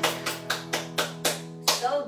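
Acoustic guitar struck with repeated full downstrokes on one held chord, about four or five strums a second, with a harder strum near the end.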